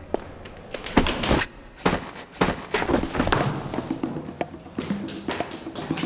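Several thuds and knocks of people tumbling down a flight of stairs, over background music.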